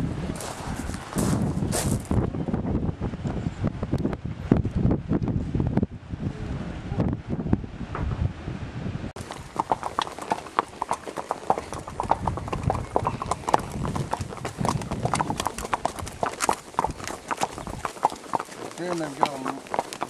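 Horse's hooves clip-clopping, a quick run of knocks that starts abruptly about halfway through. Before that there is a dense low rumble.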